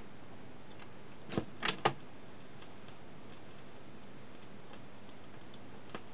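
Fidelity HF24 record player's auto-changer mechanism clicking three times in quick succession about a second and a half in, with faint scattered ticks over a steady low hiss.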